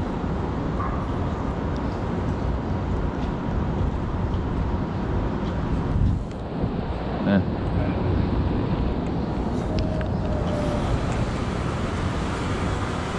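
City street ambience: a steady wash of traffic noise, with a brief sharper sound about seven seconds in.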